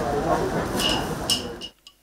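People's voices in a gathered crowd, with two light clinks about a second in; the sound cuts off abruptly shortly before the end.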